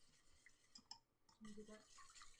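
Faint, irregular clicking of a wire whisk against a metal mixing bowl as eggs, milk and melted butter are whisked together.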